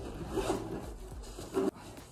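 Handling noise as a laptop is picked up and brought out: cloth rubbing and rustling with soft scrapes, and a short louder scrape near the end.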